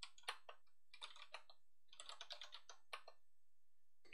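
Faint keystrokes on a computer keyboard, in two quick runs of clicks.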